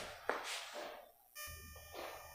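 A quiet pause with a soft click near the start, then, a little past halfway, a faint steady high-pitched tone with several pitches sounding together, like a distant beep or buzz.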